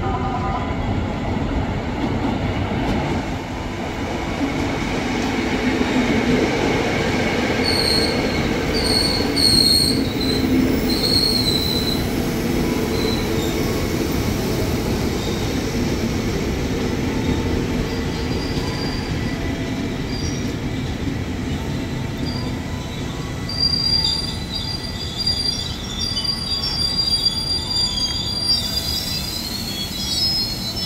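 An electric commuter train (KRL) pulls into the station with a steady running rumble. High-pitched squeals come in short bursts around a third of the way in and again near the end.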